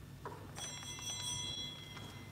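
A small, high-pitched bell rung with a few quick strikes about half a second in, ringing on for over a second. It is the bell that signals the start of Mass and the priest's entrance.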